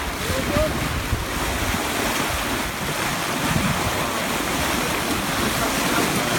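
Wind buffeting the phone's microphone over the steady rush of sea water breaking along a racing sailboat's hull.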